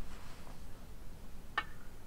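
A single short click of a Go stone set down on a wooden Go board, about one and a half seconds in, over faint room tone.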